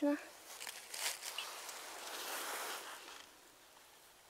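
Soft rustling and scraping from about half a second in, fading away near the end: gloved fingers rubbing soil off a freshly dug coin.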